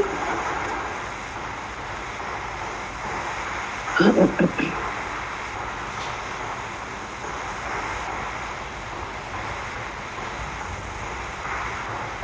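Steady background noise coming through an open microphone on a video call, with a brief voice about four seconds in.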